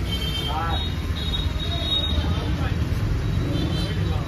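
Steady low rumble with faint, indistinct voices in the background.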